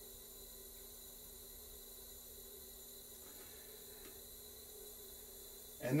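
Faint room tone: a steady low hum with a light hiss, and one small click about four seconds in.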